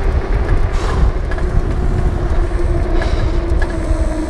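Wind rushing over the microphone of a 3000 W 48 V e-bike at speed, with the electric motor's steady whine sinking slowly in pitch as the bike eases off.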